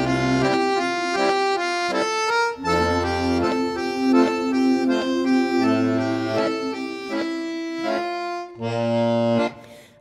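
Button accordion playing an instrumental melody over low bass notes, with a short break about two and a half seconds in. The sound fades away at the very end.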